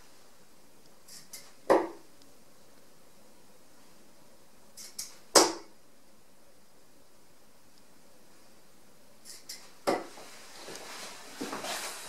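Harrows Elite 23g 90% tungsten steel-tip darts thrown one at a time into a dartboard: three sharp hits about four seconds apart, each with a faint tick just before it. A longer rustle of movement comes near the end.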